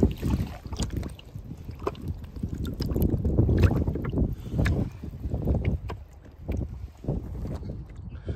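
Shallow water splashing and sloshing irregularly around a landing net as a small sea trout is let go, with wind rumbling on the microphone.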